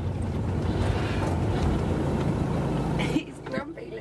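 Motorhome engine and road noise heard inside the cab, a steady low drone that cuts off about three seconds in as the vehicle comes to a stop.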